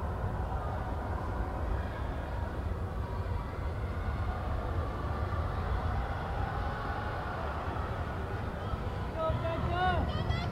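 Steady crowd babble from spectators and athletes in a large indoor track arena. Near the end, voices rise into shouts as runners come around the track.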